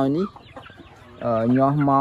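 Domestic hen clucking, under a man's voice talking.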